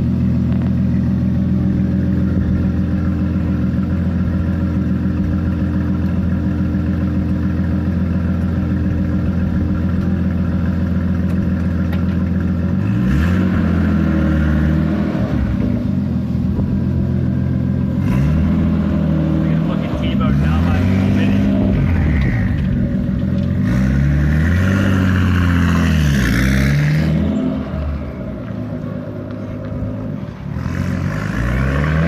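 Nissan RB25 turbocharged straight-six in a Mk1 Ford Capri idling steadily. About halfway through it is revved in a run of throttle blips, each rising and falling in pitch. Near the end the sound drops away as the car pulls off.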